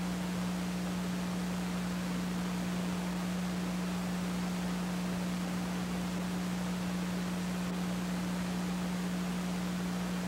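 Steady hiss with a constant low hum and no other sound: the background noise of an old video recording once the race call has ended.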